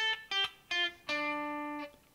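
A clean electric guitar plays a slow single-note lick on the upper strings. Three short picked notes step down in pitch, then a fourth note is held for nearly a second.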